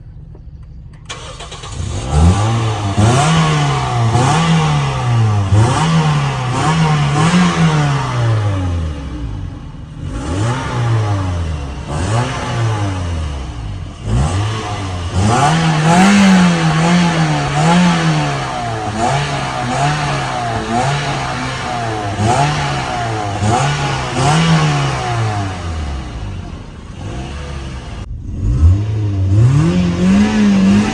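Toyota Corolla's four-cylinder petrol engine revved repeatedly with the accelerator pedal, in quick blips about one a second, its pitch climbing and falling back each time, with a few brief pauses at a lower idle.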